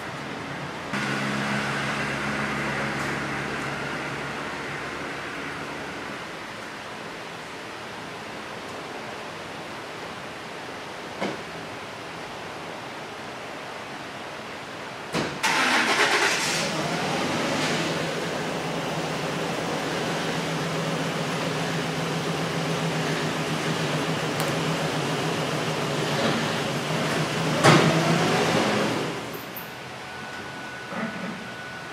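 A Ford Super Duty pickup's V8 starts about a second in and idles steadily, fading after a few seconds. Past the halfway point, after a short burst of noise, a truck engine runs louder and steadier for about twelve seconds, with a sharp knock shortly before it stops near the end.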